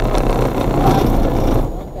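A motorcycle passing close alongside the car: a loud swell of engine and road noise that falls away near the end.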